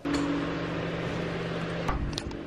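A steady low machine hum with an even hiss under it, and a short click near the end.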